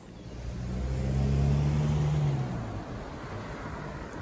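A car driving past on the road alongside, its low engine hum swelling to a peak about halfway through and fading away.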